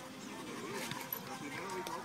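Indistinct chatter of voices in the background, with a dog panting close by.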